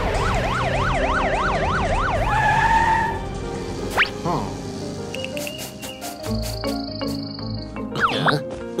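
A cartoon police-car siren in fast yelp, its pitch swinging up and down about four times a second for the first two to three seconds, over background music. The music carries on afterwards, with a quick rising whistle-like sweep about four seconds in.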